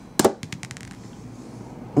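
A plastic ten-sided die thrown onto a padded tabletop: a sharp clack a fraction of a second in, then a quick run of smaller clicks as it bounces and tumbles to rest within the first second.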